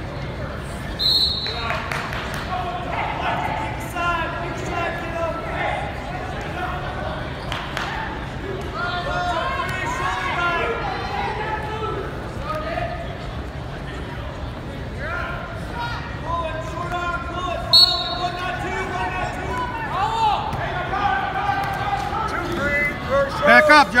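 Spectators' and coaches' voices calling out in a reverberant gymnasium during a wrestling bout, over low thuds. Short, shrill blasts, most likely the referee's whistle, cut through about a second in and again about two-thirds of the way through.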